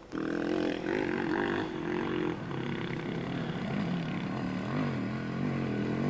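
Enduro motorcycle engine working up a steep dirt track, its revs rising and falling unevenly. It starts just after the opening and runs at a fairly even level.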